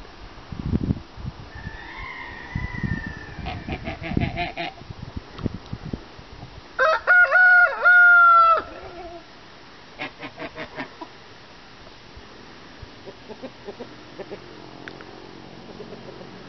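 A rooster crowing once, loudly, for about two seconds midway through, in a few joined syllables; chickens clucking softly before and after.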